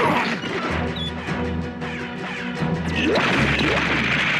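A loud crash sound effect right at the start over dramatic cartoon action music, which carries on with held low notes and a few sliding effect sounds near the end.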